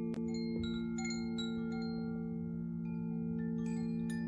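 Singing bowls humming in a steady, sustained chord, with a scattering of light chime strikes ringing over them in the first second and a half and again near the end.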